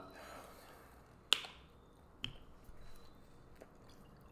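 Plastic water bottle handled and its screw cap opened: two sharp clicks about a second apart, the first the louder, over quiet room noise.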